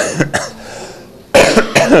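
A man's short, loud non-speech vocal bursts close to the microphone: a brief one at the start, then a louder cluster about one and a half seconds in.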